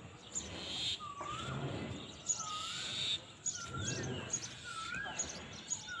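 A bird repeating a short whistled call that dips and then rises, about once a second, with fainter high chirps of other birds behind it.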